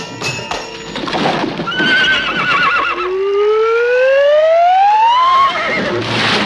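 A horse neighing: a quavering whinny about two seconds in, then a long call rising in pitch for over two seconds that drops away sharply near the end.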